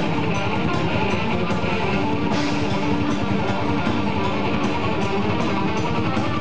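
Live heavy metal band playing: distorted electric guitars, bass guitar and a drum kit keeping a steady beat.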